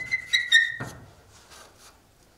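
Chalk squeaking on a chalkboard while a word is written: three short, high squeaks within the first second.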